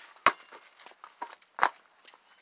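A basketball bounced on a concrete driveway: two sharp bounces about a second and a half apart, the second the loudest, with a few fainter taps between.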